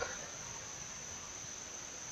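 Crickets trilling steadily in the background: one unbroken high-pitched tone over faint outdoor ambience.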